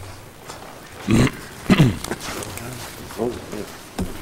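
Short wordless vocal sounds from people in a meeting room: a sharp burst about a second in, a falling voiced sound just after it, and a softer one a little past three seconds.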